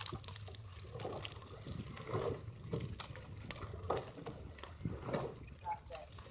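Rowing eight moving along the water, oars dipping and sloshing, with scattered light knocks and faint voices.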